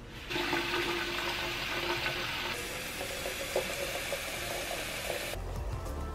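Water running from a tap into a metal watering can: a steady rush of water filling the can.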